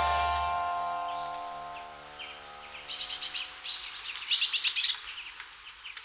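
The song's last chord rings out and fades over the first couple of seconds, then birds chirp in short clustered runs of high calls until near the end.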